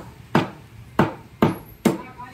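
Meat cleaver chopping raw chicken into small curry pieces on a wooden chopping block: four sharp chops, about two a second.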